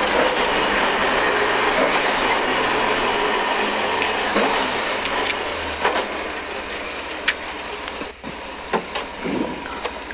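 Rally car heard from inside the cabin, braking and changing down through the gears just after the stage finish. A loud, steady rumble of tyres, road and engine, with the engine note falling, dies away over the last few seconds to a low run and a few sharp clicks and knocks as the car rolls to a stop.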